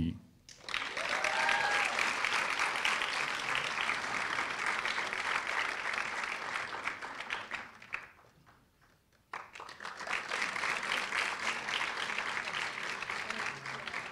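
Audience applauding in a large hall, steady clapping that breaks off for about a second just past the middle and then resumes. A single voice calls out briefly about a second in.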